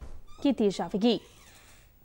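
A woman newsreader speaking Punjabi, her sentence ending a little over a second in, followed by quiet studio room tone.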